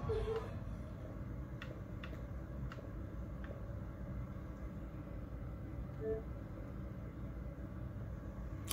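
Quiet room tone: a low steady hum, with four faint, short clicks about half a second to a second apart in the first half.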